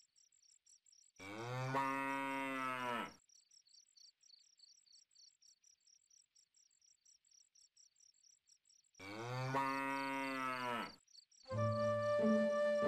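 A cow lowing twice: two long moos about seven seconds apart, each arching slightly in pitch. Between them, crickets chirp in a fast, steady pulse.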